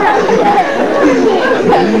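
Several people's voices talking over one another, with no words made out.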